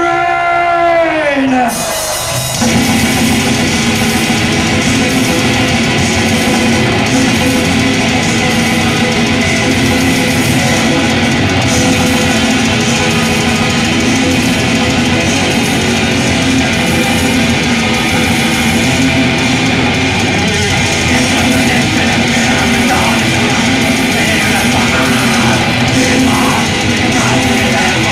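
A drawn-out yell that falls in pitch, then about two and a half seconds in a black metal band starts the song at high volume: distorted electric guitars, bass and fast drums in a dense, unbroken wall of sound.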